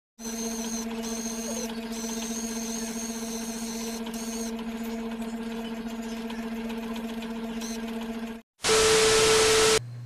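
Small electric motor of a handheld automatic rotating hair curler running with a steady hum and a thin high whine. The hum cuts off shortly before the end and a louder burst of hiss follows, lasting about a second.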